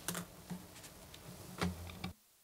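A few faint, scattered clicks and light knocks from handling things on a desk, picked up by a close microphone, with a heavier thump near the end.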